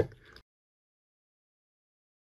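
The last of a man's spoken sentence trailing off in the first half-second, then complete digital silence.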